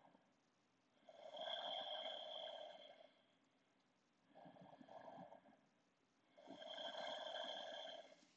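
A person breathing slowly and audibly through the nose and throat: two slow breath cycles, each a shorter breath followed by a longer one of about two seconds, with quiet gaps between.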